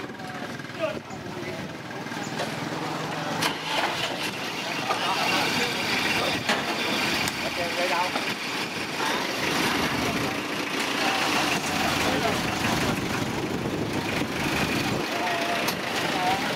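A truck's engine running, louder from a few seconds in, with people talking in the background.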